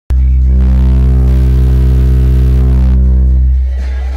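Two Xion X4-series subwoofers in a ported box with a fiberglass-fused port play one deep, steady bass tone at very high level, an SPL competition burp. It starts abruptly and drops away about three and a half seconds in.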